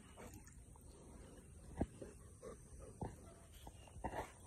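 A wet retriever coming out of a pond onto a sandy bank, making faint short sounds, with two sharp knocks about two and three seconds in.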